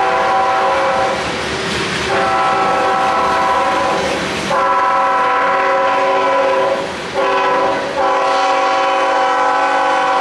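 CSX diesel locomotive's multi-chime air horn sounding a series of long blasts with a short one near the end, long-long-short-long, the grade-crossing signal. Freight cars roll by underneath with a clickety-clack of wheels on rail joints.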